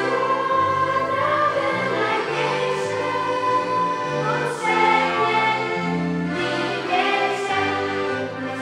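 Live folk-style music: accordions play sustained chords over a stepping bass line, with a children's choir singing.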